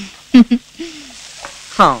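Short wordless vocal sounds from a person: two sharp quick ones, a softer one, then a louder rising cry near the end, over a steady soundtrack hiss.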